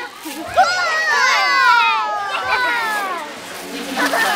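Several young children shouting and laughing excitedly as they play, their high voices overlapping in long rising and falling calls.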